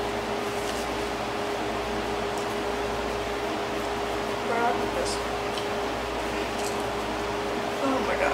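Steady room hum with a constant thin tone under it, and faint clicky mouth sounds of someone chewing an apple. A brief soft voice comes in about halfway through.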